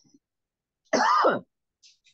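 A man clearing his throat once, briefly, about a second in, between pauses in his reading.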